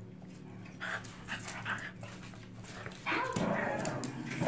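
Small dogs vocalizing as they play and tug at a plush lobster slipper, louder from about three seconds in.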